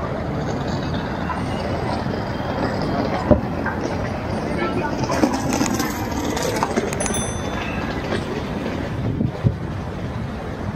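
City street traffic: a steady wash of noise from passing cars on the road, with a sharp knock a little over three seconds in.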